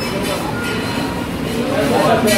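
Restaurant counter ambience: a steady noisy hum with indistinct voices in the background.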